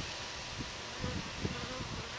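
A single honeybee buzzing its wings in short, faint, broken buzzes over a steady hiss. It is a bee poisoned by suspected pesticide exposure, quivering and disoriented as it goes into paralysis.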